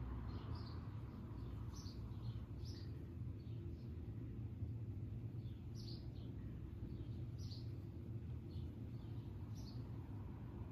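Small birds chirping: short, high chirps every second or two, over a steady low hum.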